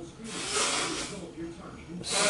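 A man's long breath out through pursed lips, a soft hiss that swells about half a second in and fades away.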